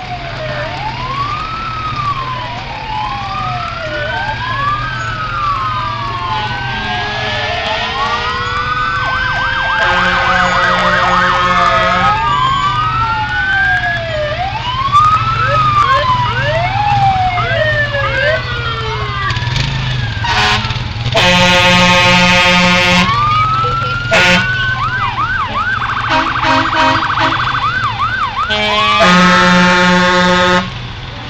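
Fire truck sirens wailing as the trucks pass slowly, several rising-and-falling sweeps overlapping, with a faster yelp late on. Long air horn blasts sound about ten seconds in, again just past twenty seconds, and at the end; these are the loudest parts. A truck engine runs low underneath.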